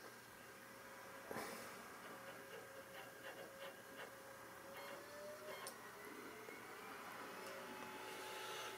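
Faint whine of a desktop PC's optical drive spinning up and reading a disc, its pitch gliding slowly, with a few light clicks.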